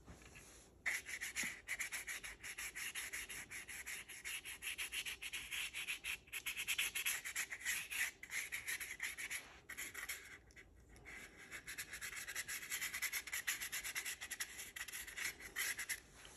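Small paintbrush rubbing paint onto corrugated cardboard in rapid short strokes, starting about a second in, with a brief pause about six seconds in and a longer one a few seconds later.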